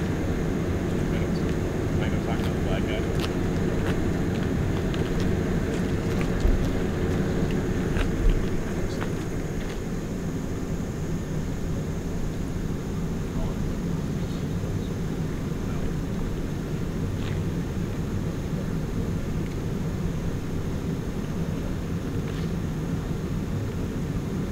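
Steady low rumble of an engine running, with faint voices in the background.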